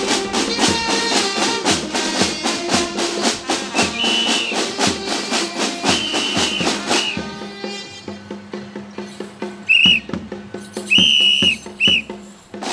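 Marching band snare drums playing a marching cadence, with a whistle blown in short blasts over it. About seven seconds in the drumming drops to a quieter, sparser beat, and three more whistle blasts follow near the end, the middle one longer.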